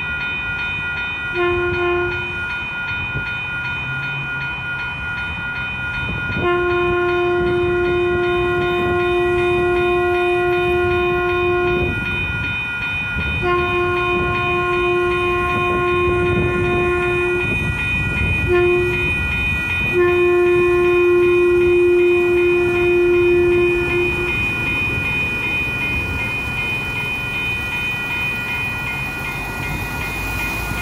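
Sprinter diesel railcar's horn sounding the grade-crossing signal: a short toot, then two long blasts, a short one and a final long one, as the train comes through the crossing. A railroad crossing warning bell rings steadily underneath, and the train's rumble rises as it passes.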